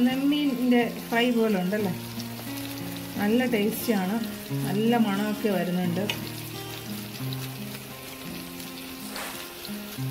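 Masala-coated fish slices sizzling as they shallow-fry in oil in a nonstick pan, with a fork moving the pieces. Louder background music with a singing voice and held low notes plays over the sizzle.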